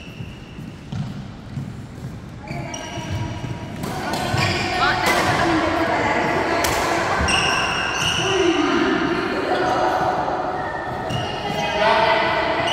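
Shoes squeaking and a shuttlecock being struck on a wooden badminton court, echoing in a large hall. From about four seconds in, several people talk close by, louder than the play.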